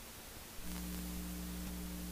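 Steady electrical mains hum with hiss on the recording. It cuts out and comes back about half a second in.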